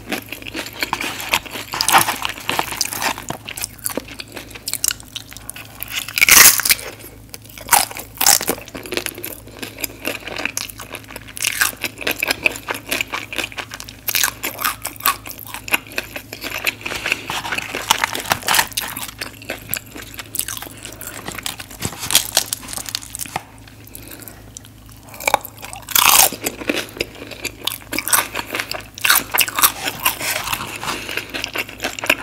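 Close-miked chewing of crunchy fried food: irregular crunches all through, loudest about six seconds in and again near the end.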